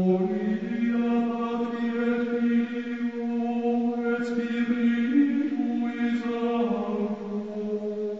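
Slow chanted singing: long held notes, each lasting a second or more, that move up or down in pitch only a few times.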